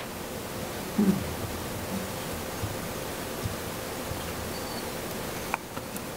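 A pause in talk: steady hiss of room tone and microphone noise from the meeting's sound system. A brief faint low sound comes about a second in, and a click shortly before the end, after which the hiss drops away.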